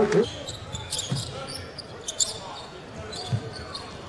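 Live basketball game sound from the court: a basketball dribbled on hardwood, with a few thuds, short high sneaker squeaks and a steady arena crowd murmur.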